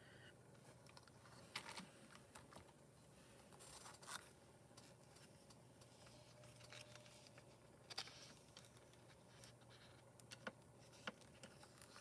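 Near silence, broken by a few faint taps and rustles of a holographic foil sheet and a card being handled.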